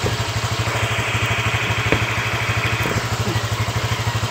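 Honda Click scooter's small single-cylinder four-stroke engine idling steadily with a fast, even pulse. A soft hiss comes in about a second in and stops near the three-second mark, with a couple of light clicks.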